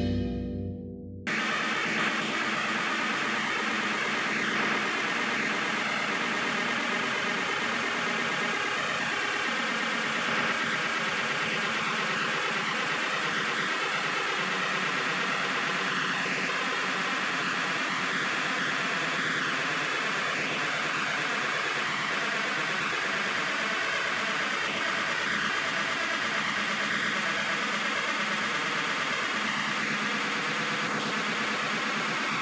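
Background music fades out in the first second, followed by an abrupt cut to a steady, even hiss of outdoor ambient noise that lasts to the end.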